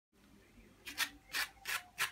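Orange zest being grated on a small hand grater: about four short rasping strokes, roughly three a second, starting a little under a second in.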